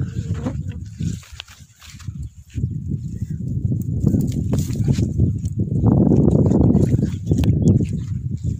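Wind buffeting a phone microphone with a loud, uneven rumble, mixed with the rustle and crackle of leafy chickpea plants being pulled up by hand from dry soil. The rumble eases about a second in and comes back strongly from about two and a half seconds in.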